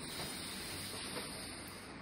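Faint, steady background hiss with no distinct sound event.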